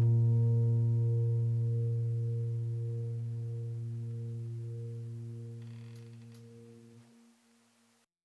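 A low piano chord in the background music, struck just before, ringing on and slowly fading until it dies away about seven seconds in.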